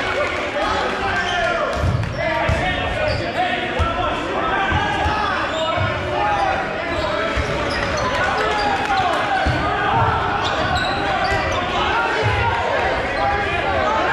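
Rubber dodgeballs thudding and bouncing on a gymnasium floor, a dozen or so irregular hits, under a steady layer of many players' voices echoing in the hall.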